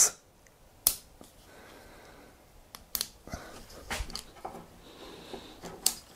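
Quiet handling noises with a few sharp clicks, about a second in, around three seconds and near the end: a small plastic bottle of silicone colour pigment being opened and handled.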